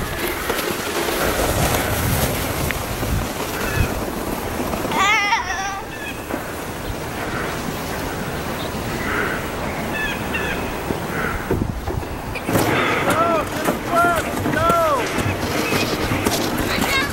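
Steady hiss of a plastic sled sliding down crusty snow, with a child's high-pitched squeals about five seconds in and several more near the end.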